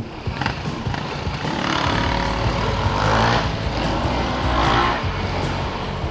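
Motorcycle engines revving as a Yamaha sport motorcycle pulls away, swelling through the middle seconds and easing off near the end.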